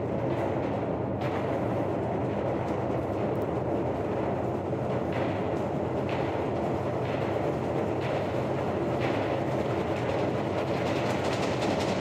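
Symphony orchestra playing loud, dense, unbroken music, with a strong accent about once a second in the second half.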